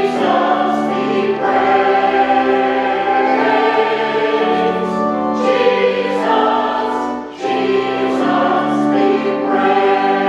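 Mixed church choir of men and women singing in harmony, with a brief break between phrases about seven seconds in.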